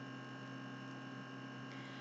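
Faint, steady electrical hum with several fixed tones and a light hiss: the background noise of the recording during a pause in speech.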